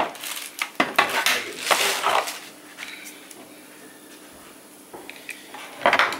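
Plastic packaging rustling and small hard plastic parts clicking and knocking as robot-vacuum accessories are handled and unpacked. The rustling is busiest in the first two seconds, goes quiet in the middle, and picks up again near the end.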